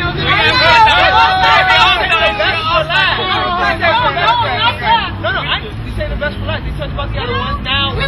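Several people talking and laughing over one another, busy for the first five seconds or so, then dying down to quieter chatter, over a steady low hum.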